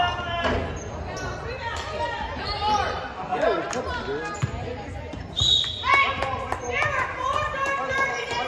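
Sounds of a girls' basketball game in a gym: players and spectators calling out over one another, with a basketball bouncing on the hardwood court and a few sharp knocks, all echoing in the large hall.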